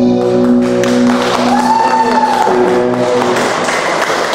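A live band with accordion, electric guitar and double bass holds its final chord, which dies away about three and a half seconds in. Applause rises over it and carries on after the music stops.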